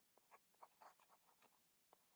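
Near silence, with a few faint, short scratches and taps of a pen writing handwritten letters.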